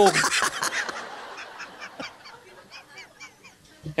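A man laughing hard: a loud burst of laughter, then a quick run of high-pitched, squeaky wheezing gasps, four or five a second, that fades out.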